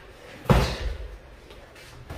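A boxing glove punch landing, one sharp thud about half a second in.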